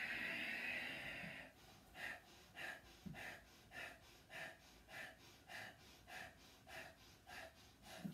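A long breath out through the nose, then a steady run of about ten short sniffs out through the nose, roughly one every 0.6 s, each sniff timed to a downward bounce of a squatting Kundalini breathing exercise.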